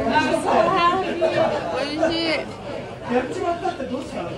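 Several people's voices chatting, strongest in the first two seconds, over the background noise of a busy eatery.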